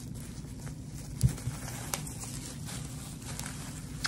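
Bubble wrap crinkling and rustling as it is folded and pressed flat by hand, with faint scattered clicks and one thump about a second in.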